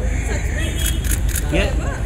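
Camera shutters firing in a run of quick clicks in the first second, over a low steady rumble. A voice calls briefly near the end.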